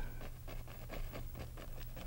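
A paintbrush dabbing and scrubbing oil paint onto a canvas in a quick run of light taps, over a steady low hum.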